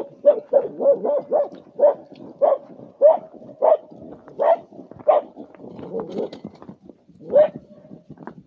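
Border collie barking repeatedly at a single cow that has strayed from the herd, herding it back on instinct. A quick run of barks comes first, then barks about half a second to a second apart, and after a short gap one last bark near the end.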